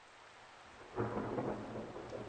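Rain fading in from silence, with a low rumble of thunder that starts suddenly about a second in.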